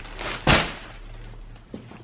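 Plastic shopping bags rustling and crinkling as they are pulled open by hand, with one sharp, louder crackle about half a second in.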